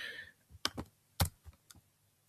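Computer keyboard keys clicking: about five separate key presses, spaced irregularly.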